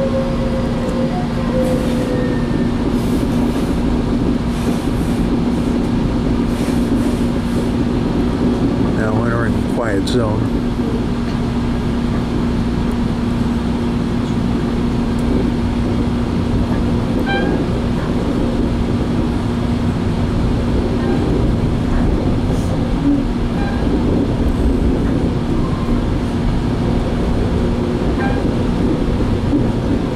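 Running noise inside a Metrolink commuter train car moving at speed: a steady rumble with a constant low hum.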